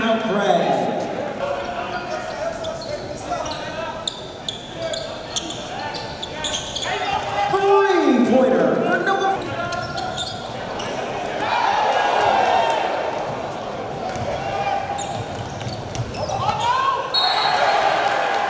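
Live basketball game sound on a hardwood court: a ball being dribbled and bouncing, with players and spectators shouting and calling out. Short squeaking glides, typical of sneakers on the floor, come through at times.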